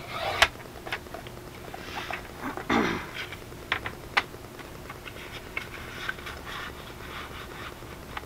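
A paper trimmer's cutting head slides along the rail through cardstock and ends in a sharp click, followed by a louder scuff and a few light taps and rustles as cut paper strips are handled on a paper-covered desk.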